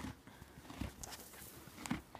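A horse's hooves clopping a few times, faintly, on hard ground as it is led by the halter.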